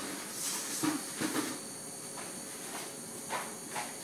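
Rustling and scuffing with a few short knocks as a man gets up from his seat, most of it in the first second and a half, with two fainter knocks near the end.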